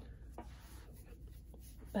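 Faint rubbing of fingers on paper as a sticker is smoothed down onto a planner page, with one soft tap about half a second in.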